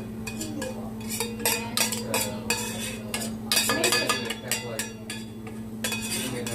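Metal spoon scraping and clinking against a stainless steel skillet as butter and poppy seed topping is spooned out of it, in irregular clinks and scrapes. A faint steady hum runs underneath.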